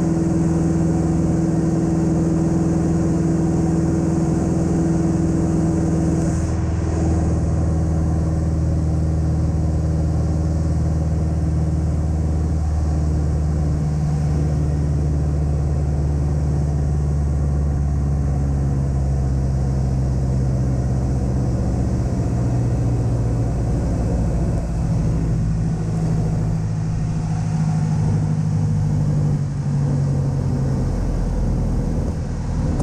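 Single-engine piston engine and propeller of a Van's RV light aircraft, heard from inside the cockpit on final approach and touchdown. It drones steadily at reduced power, and its note shifts a few times.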